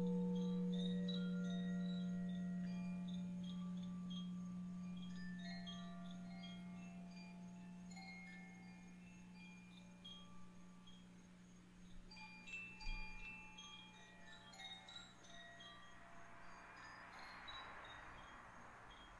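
Hanging metal bar chimes rung softly, a scatter of short high ringing notes, over a deep sustained tone struck just before and slowly dying away. A soft rushing wash rises near the end.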